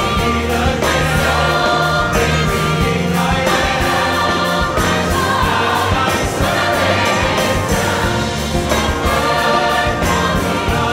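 Large mixed choir singing loudly with orchestral accompaniment, in a sustained passage with a steady bass beneath.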